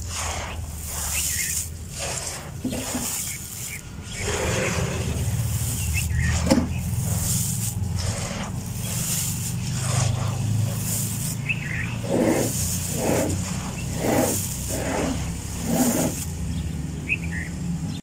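Hands sweeping and rubbing through dry, gritty sand and fine gravel, a scratchy hiss with each stroke, repeated many times, over a steady low rumble.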